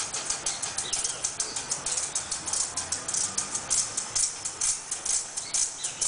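Maracas shaken in a steady, quick rhythm of about five or six shakes a second, with little else playing.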